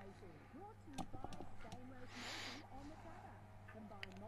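Faint background voices, with a steady low electrical hum underneath. There is a sharp click about a second in and a brief hiss a little after two seconds.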